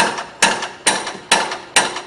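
Hammer driving big nails to fix a fibre awning sheet in place: sharp blows at a steady pace of a little over two a second, five in all, each ringing briefly.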